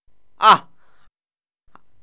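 A man's single short voiced exclamation, 'aah', about half a second in, over a faint background hiss.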